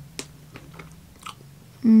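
Someone chewing a bite of chocolate-covered strawberry: a sharp click about a fifth of a second in, then soft mouth clicks, and near the end a loud hummed "mm" of approval.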